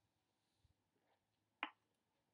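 Near silence with one short, sharp click about a second and a half in, and a fainter tick shortly before it.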